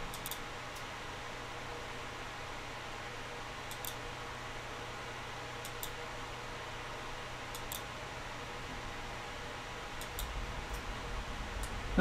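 Quiet room tone, a steady hiss with a low hum, broken by about half a dozen faint, sharp computer mouse clicks spread a second or two apart.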